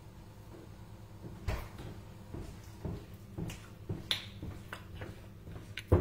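Footsteps on a hard floor coming closer, a soft knock about every half second, with the clicks and crackle of a small plastic water bottle being handled. The loudest click comes just before the end.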